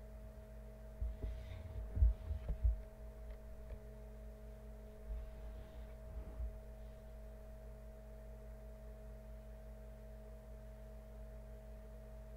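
Steady electrical hum, with a few low thumps about one to three seconds in and again around five to six seconds, as the paper on the work table is handled and slid across it.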